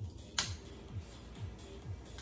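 One sharp click, a little before halfway, from a long-nosed utility lighter being sparked to light a cupcake candle. Background music with a steady beat runs under it.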